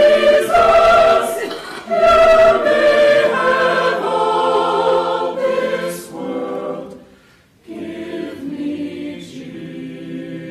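Mixed church choir singing sustained chords. About seven seconds in the singing breaks off briefly, then resumes more softly.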